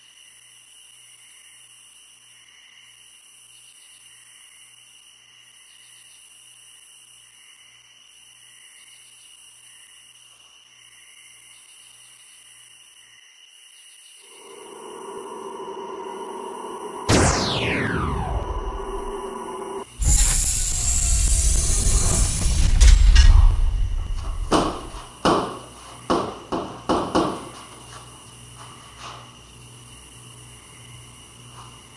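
Horror-film sound-effect sequence. A faint hum gives way to a rising drone, then a sharp falling whoosh, then a loud, deep rumbling boom. It ends in a quick series of sharp clunks that die away near the end.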